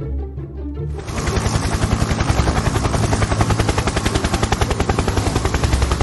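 Light plucked-string music, then about a second in a loud, rapid, evenly spaced rattle like machine-gun fire cuts in abruptly and stops suddenly after about five seconds.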